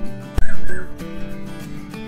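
Acoustic guitar background music from a video clip played back with its audio gain raised. A loud, short sound effect comes about half a second in.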